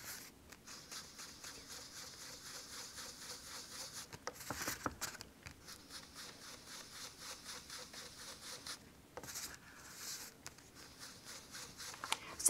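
Blending brush bristles rubbing ink over the edges of cardstock in quick, soft, repeated scrubbing strokes, with a couple of louder knocks about the middle.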